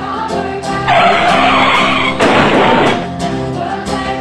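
Background music, cut across by an added sound effect: a harsh noisy sweep lasting about a second, then a shorter, fuller rush of noise, after which the music carries on alone.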